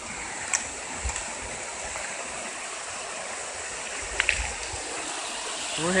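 Mountain headwater stream running over rocks and a small cascade, a steady rush of water, with a couple of brief clicks about half a second in and about four seconds in.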